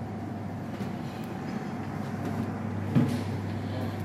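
Buffet room ambience: a steady low hum with a few faint clinks, and one sharp knock about three seconds in.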